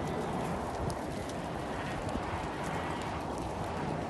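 A flock of Harri sheep milling and jostling, their hooves shuffling and clicking on sandy ground in a steady mass of movement.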